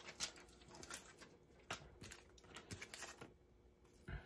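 Near silence with a few faint taps and rustles from small items being handled on a desk.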